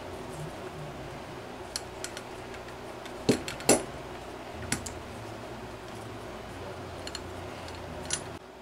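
Scattered sharp clicks and light knocks of a small metal model-engine crankcase being handled and turned over in the hands, the loudest pair about three and a half seconds in, over a steady low room hum.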